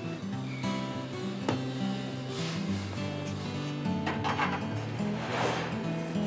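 Music with a bass line moving from note to note, and a few soft swishes over it.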